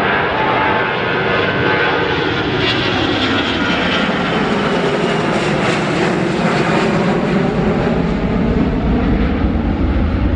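Airbus A340-300's four CFM56 turbofan engines at takeoff climb power as the airliner passes overhead: a loud, steady jet roar with whining tones that slowly fall in pitch, and a deeper rumble building over the last couple of seconds.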